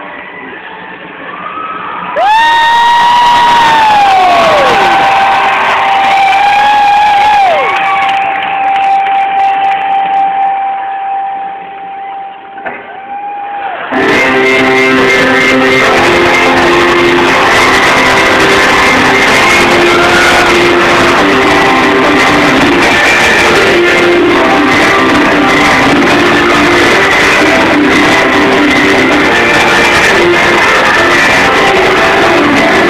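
Live rock band in an arena, recorded on a cell phone. About two seconds in, a lone lead line, electric guitar-like, plays a falling pitch bend and then holds a long sustained note. About fourteen seconds in, the full band comes in and plays on steadily.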